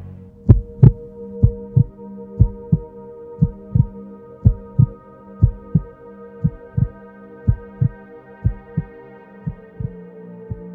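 Heartbeat sound effect: pairs of low thumps about once a second over a steady low drone.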